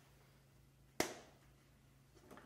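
A single sharp knock or slap about a second in, with a short echo, over a faint low hum.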